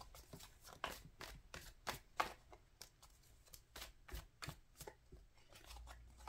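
A tarot deck being shuffled by hand: faint, irregular soft clicks and flicks as the cards slide against each other.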